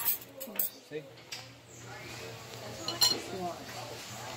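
Cutlery clinking against ceramic plates and a mug at a table, with several sharp clinks in the first second and another about three seconds in. A steady low hum runs underneath.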